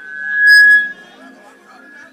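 Public-address feedback squeal: a single high tone swells over about half a second into a loud shriek, then drops off sharply just before one second in, leaving a fainter tone hanging on. Soft keyboard music plays underneath.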